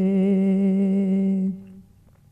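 A man's solo unaccompanied voice holding the last syllable of a sung line of a manqabat (Urdu devotional poem) on one steady note with slight vibrato. The note lasts about a second and a half, then fades out into a short pause.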